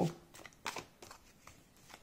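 Thin cardboard fortune-telling cards being gathered and squared in the hands: a few faint, soft clicks and rustles, the clearest about two thirds of a second in.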